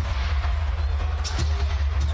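Basketball arena crowd noise over a steady low rumble, with music playing over the arena sound system during live play.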